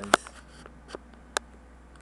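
A sharp click just after the start, then two fainter clicks about half a second apart later on, over a steady low hum.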